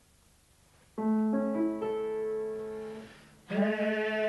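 Piano notes struck one after another about a second in, building a chord that rings and fades, giving a barbershop quartet its starting pitches. Near the end the men's voices come in together in close harmony on "Hey".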